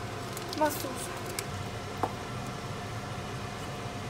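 Parmesan being grated on a handheld metal grater: a few short scraping strokes in the first second and a half, then a single sharp knock about two seconds in, over a steady low hum.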